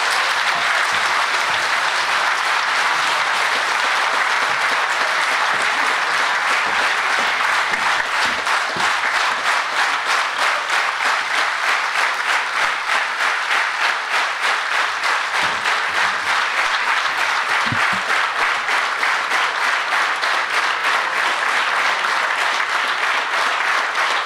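A large audience applauding steadily, the clapping settling into a regular rhythm in the second half.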